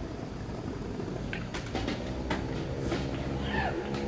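Steady low rumble of a motor vehicle engine running nearby, with a few faint ticks.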